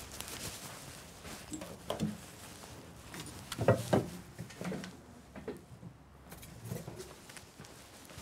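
A person walking in boots across an outdoor yard: irregular footsteps, loudest a little past the middle.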